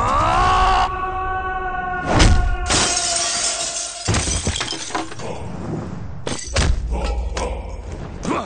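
A large glass window shattering, with a heavy crash about two seconds in and broken glass spraying and falling for a second or so afterwards. It plays over dramatic score music that opens with a rising swoosh. Several hard thumps from the fight follow near the end.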